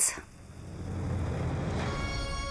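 A low, steady rumble swells in and holds. Near the end a sustained music chord begins over it.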